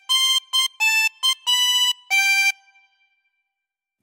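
Ten-hole diatonic harmonica in C playing a short tune of seven single notes, G C C A C B G, on blow and draw holes 6 and 7. Each note is steady in pitch. The last note fades out about two and a half seconds in.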